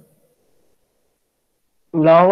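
A voice breaks off at the start, followed by near silence, and speech starts again just before the end.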